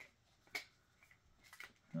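A few faint, sharp clicks and taps of fingers picking at the sealed top of a metal collectible soda can, the clearest about half a second in.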